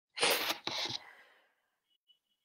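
A man sneezing: two quick, loud bursts within the first second that trail off over the next half second.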